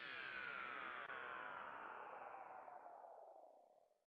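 Synthesized outro sound effect: a cluster of electronic tones sliding downward in pitch together, faint, fading away near the end.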